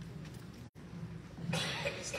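A single cough about one and a half seconds in, over a steady low hum. The audio cuts out for an instant shortly before.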